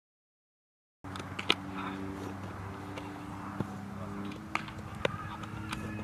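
Outdoor ambience of a baseball practice field: a steady low machine-like hum with several sharp knocks, the loudest about half a second after the sound starts, which comes in about a second in after silence.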